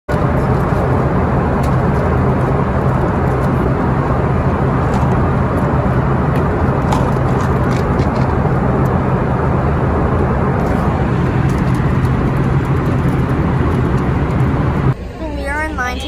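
Steady, loud roar of an airliner cabin in flight, with a low hum beneath it. The roar cuts off suddenly about a second before the end.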